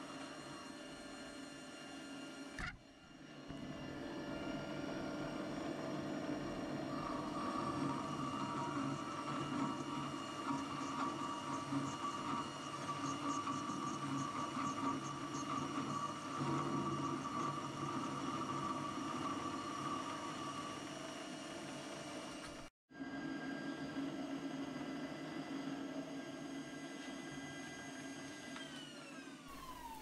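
A small benchtop metal lathe running with a steady motor and gear whine while turning a taper on the end of a hammer handle. The sound breaks off briefly twice, and near the end the whine falls in pitch as the lathe spins down.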